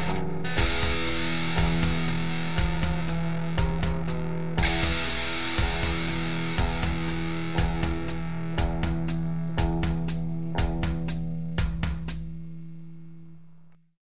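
Song outro: rock music with distorted electric guitar over a held low note and a steady beat of about two hits a second, fading out near the end.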